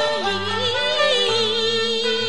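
Cantonese opera singing: a voice drawing out one long, wavering note over instrumental accompaniment.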